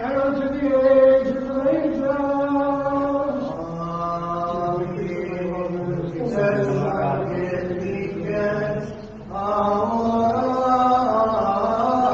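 Byzantine liturgical chant: a voice sings long, drawn-out notes that glide from one pitch to the next, with a brief break for breath about nine seconds in.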